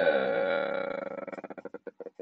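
A man's long drawn-out hesitation sound, "uhhh", held steady for over a second and then breaking up into a quick, fading creaky stutter.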